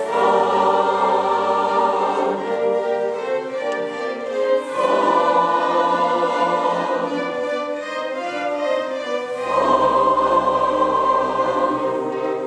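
Mixed community choir singing with a string orchestra, loud sustained chords over held low bass notes. Three phrases come in with a swell: at the start, about five seconds in, and just before the ten-second mark.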